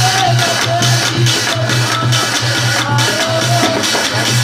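Folk devotional music: a dholak and a brass thali (plate) beaten on a metal pot keep a steady, pulsing rhythm. A gliding melodic line sounds above the drumming.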